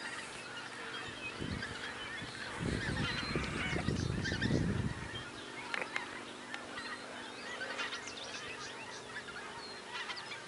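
A flock of geese flying over, many birds honking at once in a dense, overlapping chorus. A low rumble sits under the calls from about two to five seconds in.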